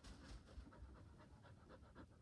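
Border Collie panting quickly and faintly, short even breaths at about six a second.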